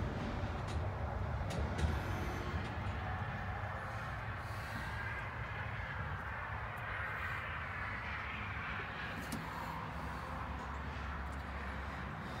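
Steady low background rumble with a few faint clicks scattered through it.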